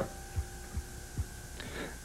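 Low steady hum with three soft low thumps, a little under half a second apart, and a faint voice starting near the end.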